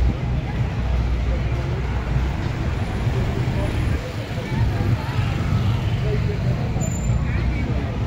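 Busy street ambience: a steady low rumble of car and motor scooter traffic with people's voices in the background.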